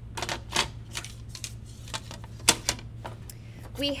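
Irregular sharp clicks and taps of embroidery materials being handled on a worktable, the loudest about two and a half seconds in, over a steady low electrical hum.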